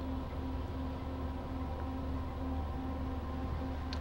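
Steady low machine hum of a wire EDM machine standing idle after wire threading, with a faint tone that comes and goes over it.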